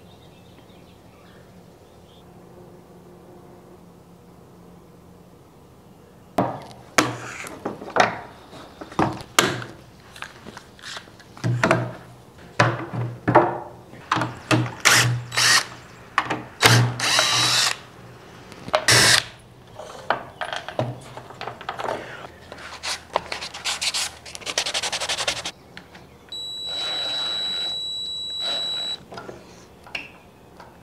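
Cordless drill driving screws through wooden wedge blocks into a wooden table, in many short bursts of a few seconds' spacing, then one steady run of about three seconds with a high whine near the end. The wedges are being screwed down to clamp a glued, sagging door's joints closed.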